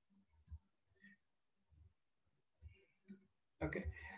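A few faint, scattered computer keyboard clicks, a single keystroke at a time, while code is typed into an editor.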